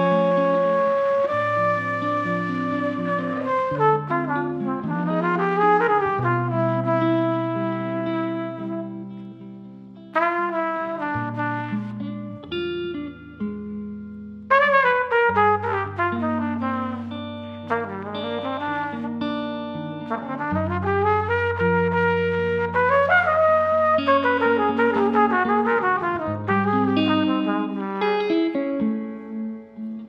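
Trumpet and guitar duet. The trumpet plays melodic phrases with quick rising and falling runs over the guitar's chords and sustained bass notes.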